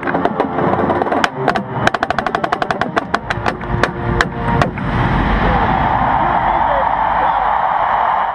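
Marching snare drum played in quick runs of sharp strokes over held brass chords from a drum corps. About five seconds in, the playing gives way to steady crowd cheering in a stadium.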